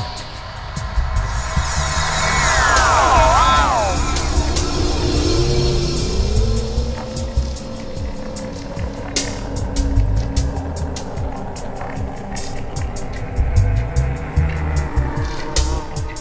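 Electronic ambient music on synthesizers. Gliding synth tones swoop down in pitch a couple of seconds in, then a slow rising tone settles, over a pulsing low bass and sharp clicking high percussion.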